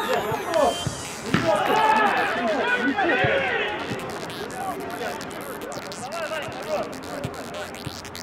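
A football being kicked on an artificial pitch: a few hollow thuds, the sharpest about a second and a half in, followed by several players shouting over one another, loud at first and then settling into scattered calls.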